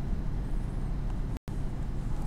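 Steady low rumble of background noise, with a brief complete dropout to silence about one and a half seconds in.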